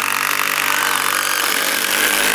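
DeWalt cordless impact drivers hammering screws into a wooden beam, a steady, continuous rattle.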